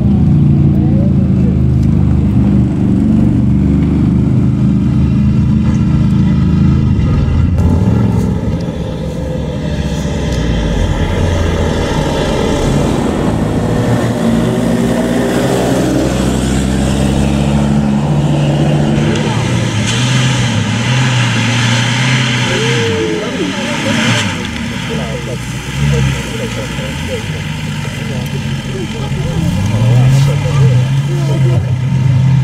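Off-road 4x4 engines running: a steady engine note for the first several seconds, then after an abrupt change an engine revving up and down as a Land Rover Defender accelerates away trailing black exhaust smoke, then a steadier engine note from a 4x4 working through mud.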